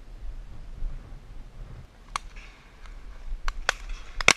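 Shotgun shots some way off: one crack with a short echo about halfway through, then two in quick succession near the end. A low rumble comes before them.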